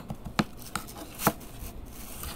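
A spoon stirring a thick, sticky mix of baking soda and cream in a jar, clicking sharply against the jar's sides about four times.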